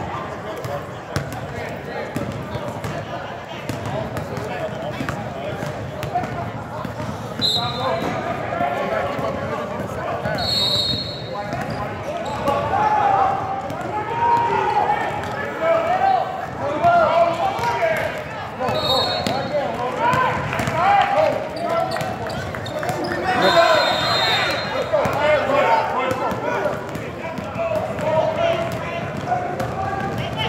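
Basketballs bouncing on a gym court among many spectators' voices and shouts that echo in the large hall, with a few short high squeaks.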